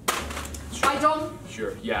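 Speech only: a voice talking in conversation, with no other sound standing out.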